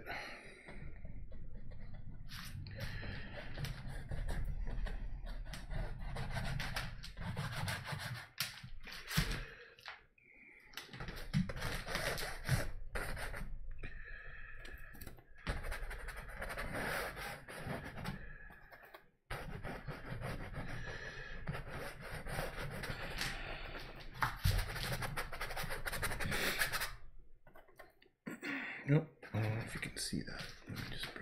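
Paintbrush scrubbing oil paint onto a stretched canvas, in long spells of rubbing lasting a few seconds each with short breaks between them.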